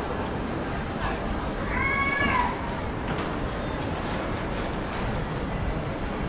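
A small child's high-pitched wail, held for under a second and dropping in pitch at the end, about two seconds in, over a steady background hubbub of people.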